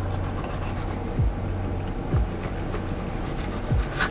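A knife cutting and scraping along a bluegill fillet on a plastic cutting board, with a dull blade. Under it runs a steady low hum, and background music's deep bass thumps land about once a second in an uneven rhythm.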